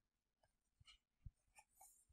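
Near silence, with a few faint short ticks and light paper sounds from a hand on a printed page.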